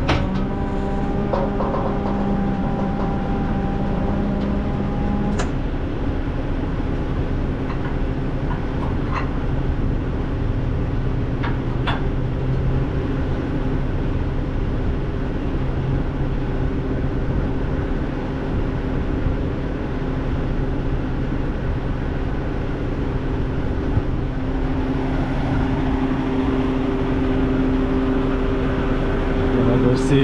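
Vehicle engine running steadily at idle with a low hum. A few light clicks and knocks come over it about five, nine and twelve seconds in, and a higher tone drops out about five seconds in.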